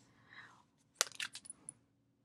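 Tarot cards being handled: a card pulled from the deck and turned over, giving a short run of crisp clicks and snaps about a second in.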